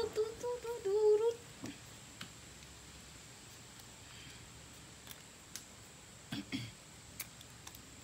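A voice hums briefly for the first second and a half, then faint, scattered clicks and ticks of a utility knife blade cutting into a plastic bottle cap held in the hand.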